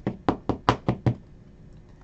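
A quick run of six knocks on a tabletop, all within about a second, two of them louder than the rest.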